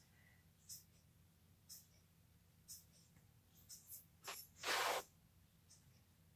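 Quiet, faint sounds of a wet watercolor brush working on paper: a few soft ticks about a second apart, and a short rushing sound near the end.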